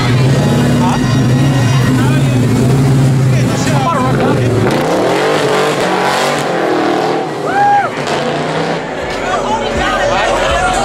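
A car engine rumbling steadily as the car rolls slowly out past a crowd, then revving, with crowd voices throughout and one loud call rising above them about three-quarters of the way through.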